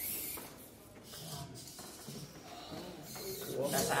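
Faint voices and room noise from onlookers, with no clear machine sound. A louder spoken "ow" comes at the very end.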